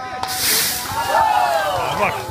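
Hot wok on a high gas flame breaking into a loud hissing sizzle about a quarter second in, as liquid goes into the hot oil; people's voices are heard over it.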